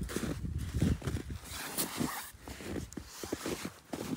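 Footsteps in snow, a series of short, irregular steps as someone walks slowly.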